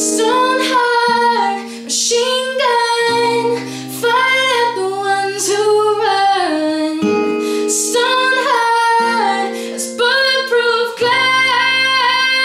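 A woman singing over her own acoustic guitar. Her voice slides between held notes while the guitar chords change every couple of seconds.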